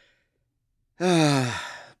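A person's long, voiced sigh, falling in pitch, starting about halfway in and lasting about a second.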